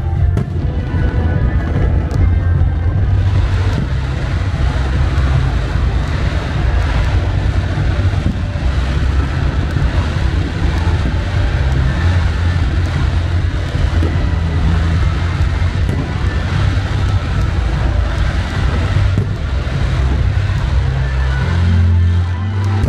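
Loud music with a heavy, pulsing bass line. It plays over a dense rushing noise from a fireworks display going off, which thickens a few seconds in.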